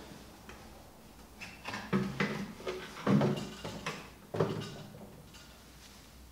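Plastic motorcycle tank cover and seat unit being knocked and set down onto the frame: three or four short clunks and scrapes, about a second apart.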